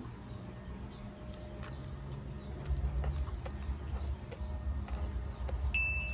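Close-up chewing of a mouthful of scrambled eggs with cheese: soft, wet mouth clicks. A low rumble comes in about halfway through.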